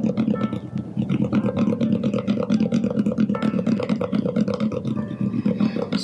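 A StewMac Fret Eraser abrasive block, super-fine grit, scrubbed fast back and forth along the fret ends and fretboard edge of a guitar neck, a steady rasping rub. This is the final polishing pass that takes the last file scratches off the dressed fret ends.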